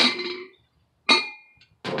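Rustling of a quilted nylon jacket against the microphone, fading out, then a single sharp metallic clink at the grill about a second in, with a brief ringing tone after it.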